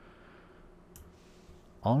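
A few faint computer mouse clicks over quiet room tone, one at the start and a clearer one about a second later. A man's voice starts near the end.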